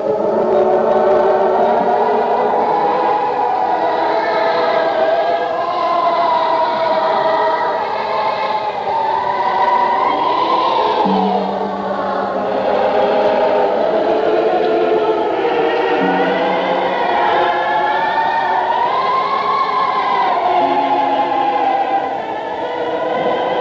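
Film score of a choir singing slow, sustained, swelling chords, with a low held note entering now and then beneath it.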